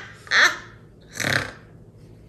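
A woman laughing in two loud high peals about a second apart.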